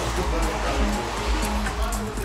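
Music playing through a car's aftermarket audio system, with deep subwoofer bass (an Alphard Machete M15 subwoofer) filling the cabin.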